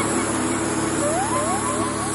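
Background music in a breakdown: the beat and bass drop out, leaving sustained synth notes, with a few short rising swoops about a second in.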